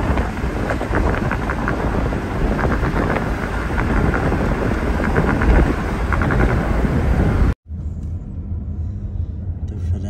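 Wind buffeting the microphone over road noise from a moving car, loud and rough. It cuts off suddenly about seven and a half seconds in, giving way to a quieter, steady low road rumble inside the car.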